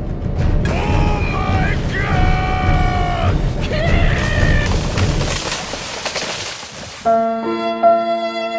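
A dubbed, cartoon-like voice crying out in several drawn-out wails over a loud low rumble that dies away about five seconds in. About seven seconds in, a light plucked-string music cue starts.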